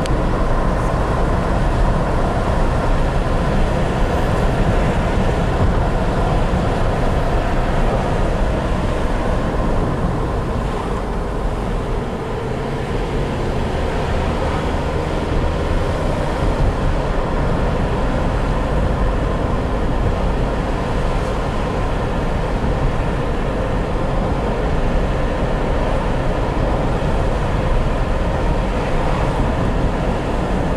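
Steady road noise inside a moving car's cabin: tyres running on asphalt with the engine's low rumble underneath.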